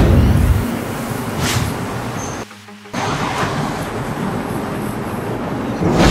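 Steady road-traffic noise with no voices, broken by a brief near-silent drop about two and a half seconds in.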